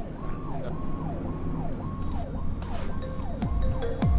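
Fire engine's electronic siren sounding, its pitch rising and falling about twice a second and growing louder. Music with a deep falling bass sweep comes in near the end.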